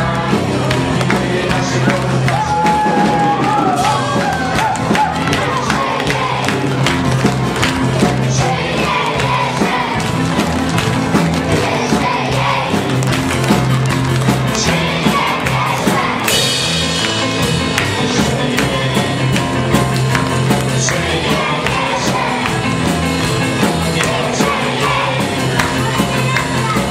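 Live pop-rock band with drum kit, keyboard and a singer, playing a song over a repeating bass line. The audience claps along to the beat.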